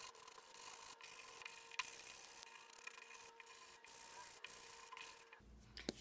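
Sandpaper rubbed lightly over the edges of a small wooden block: a faint, even scratchy rasp with a few light clicks, over a faint steady hum.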